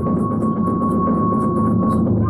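Iwami-style kagura accompaniment: a high flute note held steady over continuous drumming, with faint metallic clicks from small hand cymbals.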